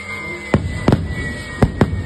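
Aerial fireworks bursting overhead: four sharp bangs in two quick pairs, about a second apart.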